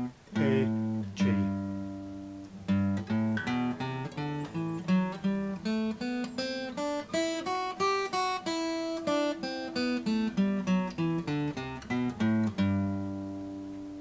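Acoustic guitar picked with a plectrum, one note at a time, playing the G major scale over two octaves from the third fret of the low E string. It climbs up and comes back down, ending on the low G, which is left ringing.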